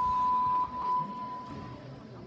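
A single long, steady electronic beep at one high pitch. It drops in level with a couple of wavers about half a second in and fades out before the end.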